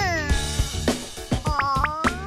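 A high cartoon voice gives a wordless disappointed 'aww' that falls in pitch, then a wavering, rising 'hmm' near the end as if puzzling, over light children's background music with soft percussion.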